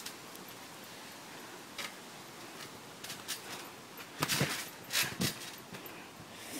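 A child landing on a trampoline mat: two dull thumps of the mat and frame about four and five seconds in, after a few faint ticks.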